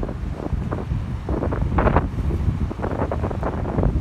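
Strong wind buffeting the phone's microphone in uneven gusts, with a rumble of ocean surf washing against a rocky shore underneath.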